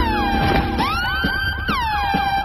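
Electronic music: repeated falling synth sweeps, each dropping quickly and settling onto a held tone, overlapping so they sound siren-like.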